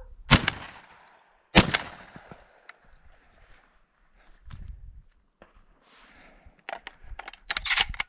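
Two shotgun shots about a second and a quarter apart, fired at passing thrushes, each ringing off into the countryside. Near the end come a cluster of sharp clicks and rustles.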